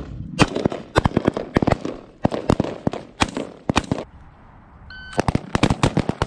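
Rapid rifle fire from an Army carbine heard from the shooter's position: many sharp shots, often in quick pairs, for several seconds, a short lull, then another fast string. A brief high tone sounds during the lull about five seconds in.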